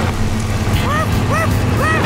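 Cartoon construction truck's engine running with a steady low rumble over rain, while three short rising-then-falling cries come about half a second apart in the second half.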